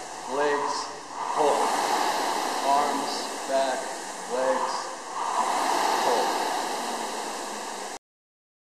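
Air rowing machine's fan flywheel whooshing, swelling with each drive stroke: two strokes about four seconds apart.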